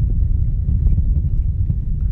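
Steady low rumble of an Alisport Yuma ultralight aircraft heard inside its cockpit: engine and airflow noise during a landing on a grass strip.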